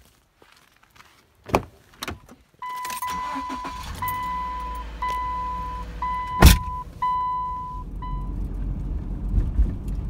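Car interior: two clicks, then the engine starts about two and a half seconds in and idles while a warning chime beeps about once a second, stopping about eight seconds in; the chime goes with a door or liftgate-open warning on the dashboard. A loud thump about six and a half seconds in.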